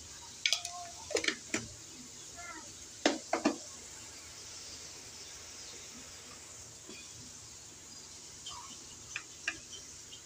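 A spoon clinking and knocking against a metal wok, five sharp knocks in the first four seconds and two small clicks near the end, over a faint steady hiss.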